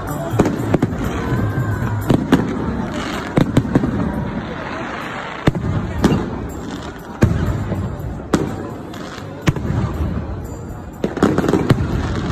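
Aerial fireworks going off overhead: sharp bangs at irregular intervals of one to two seconds, with a quick cluster of bangs near the end, over a continuous background of crowd noise.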